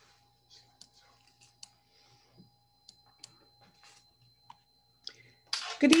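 Faint scattered clicks and small mouth-like noises over quiet room tone with a faint steady thin whine, then a woman starts speaking about five and a half seconds in.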